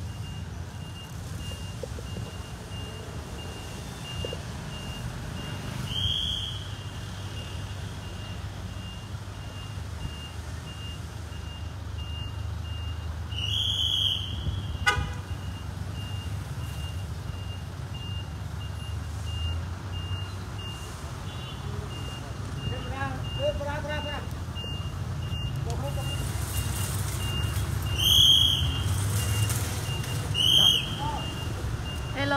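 A vehicle engine idles with a low, steady rumble, while a high electronic beep repeats about twice a second. Three short, loud toots sound over it, one about six seconds in, one midway and one near the end.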